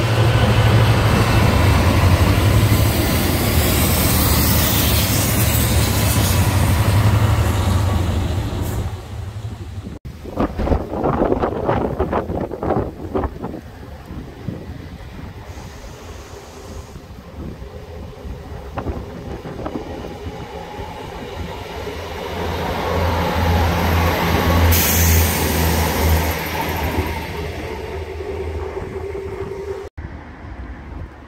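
A Class 66 diesel locomotive runs past with its two-stroke V12 engine drumming low, hauling a rake of tank wagons amid heavy rail noise. After a sudden cut come a few seconds of rapid wheel clatter over the rails. A passenger train then approaches and passes, growing loud again about two-thirds of the way through before fading.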